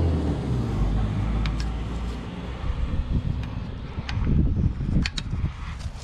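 Scattered clicks and knocks of a brake pad wear sensor being worked by hand into a brake pad at the caliper, with a few sharper clicks about four to five seconds in. A low rumble fades out over the first two seconds.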